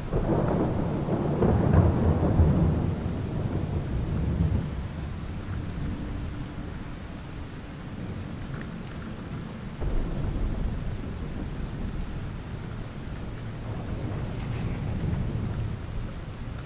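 Rainstorm ambience: steady rain with rolling thunder, one long roll loudest at the start and fading over several seconds, and a second low rumble starting suddenly about ten seconds in.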